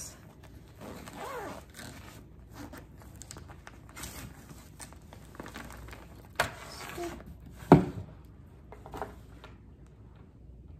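Clear plastic packaging crinkling and rustling as a plush blanket is pulled out of it and out of a cardboard box. Two sudden sharp sounds come about six and a half and nearly eight seconds in, the second the loudest.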